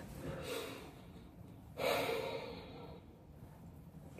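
A person's sharp breath out, like a sigh or snort, about two seconds in, fading over about a second, with fainter breathing before it.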